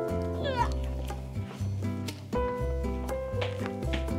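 Background music with a steady bass, over which a cat meows once about half a second in, the call falling sharply in pitch.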